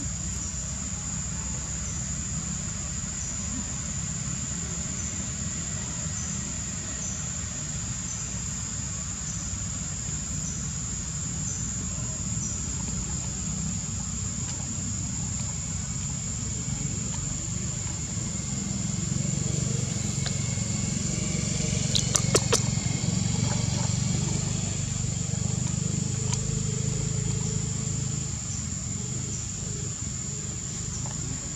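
Steady high-pitched insect drone over a low motor rumble that swells about two-thirds of the way through, like a vehicle passing, with a few sharp clicks at its loudest.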